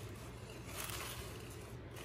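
Faint, soft rustling of spinach leaves being tossed with metal salad servers in a ceramic bowl.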